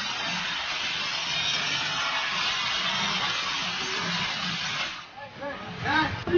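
Angle grinder cutting through the steel side wall of a shipping container: a steady hissing grind that stops suddenly about five seconds in.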